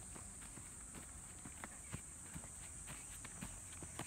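Quick, light footsteps of a child doing an agility ladder drill on grass: an irregular patter of soft taps as the feet land in and out of the rungs.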